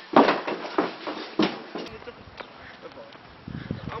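A man's voice in a few short, sharp bursts over the first second and a half, then a quieter stretch of background noise, with a man's voice starting up again near the end.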